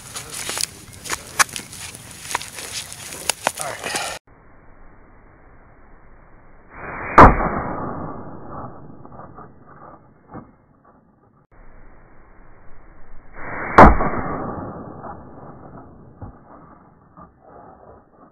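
A soft armor panel is handled and set on a wooden stand, rustling and clicking. Then come two .44 Magnum revolver shots about six and a half seconds apart, each dying away over about two seconds.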